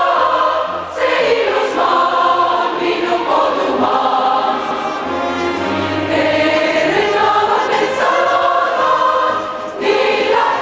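Large choir singing sustained chords in long phrases, with brief breaths between phrases about a second in and near the end.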